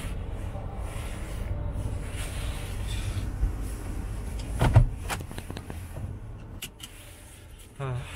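Low rumble of a car's engine and tyres heard inside the cabin as it creeps into a parking space. About halfway through there is one brief loud sound, then a few sharp clicks, and the rumble falls away as the car comes to rest.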